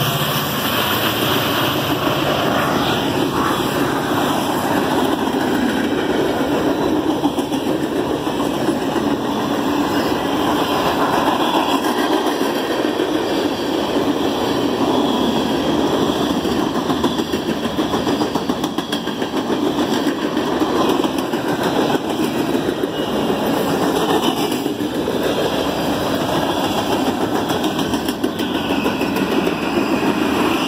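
Freight train cars rolling past at speed: a steady, loud rumble and clatter of steel wheels on the rails, with no break.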